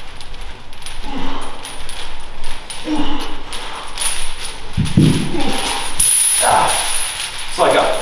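Heavy steel chain links jangling and clinking as the chain is carried over a shoulder, in a run of quick metallic clicks.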